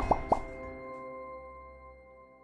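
Logo jingle: three quick bubbly pops that rise in pitch, the first two close together, followed by a ringing chord that slowly fades away.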